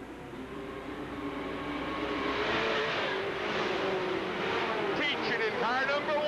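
A pack of full-fendered dirt-track stock cars racing under power, their engines growing steadily louder as the cars close in and pass by.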